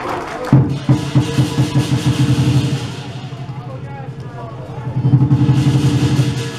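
Lion-dance percussion: a big Chinese drum beaten in rapid strokes with cymbals crashing along, loud from about half a second in until nearly three seconds, dropping back to a quieter beat, then swelling again near the end.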